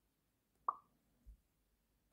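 ScratchJr's pop sound effect as a block snaps into place: a single short pop, rising quickly in pitch, about two-thirds of a second in, as the red end block joins the end of the script. A faint low thump follows about half a second later.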